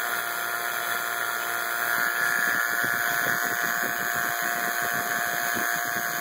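Robin Air 5 CFM two-stage vacuum pump running steadily with a constant hum and a thin steady whine. It is evacuating an air-conditioning system after a nitrogen sweep, pulling moisture out through the pump.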